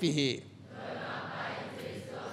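A man's voice over a microphone breaks off just after the start. A soft, even wash of hall noise follows, with no voice or tune in it.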